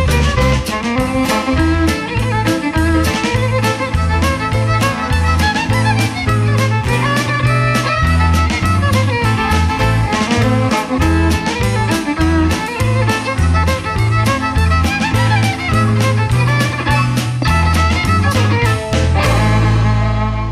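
Fiddle playing a folk tune over a steady drum-kit beat, with bass guitar, electric guitar and keyboard backing. The band ends the piece on a held final chord about a second before the end.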